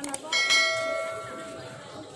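A click, then a single bright bell chime about a third of a second in that rings out and fades over about a second and a half: the notification-bell sound effect of a subscribe-button animation.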